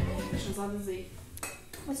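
Metal plates and a serving spoon clinking as food is dished out, with one sharp clink about halfway through.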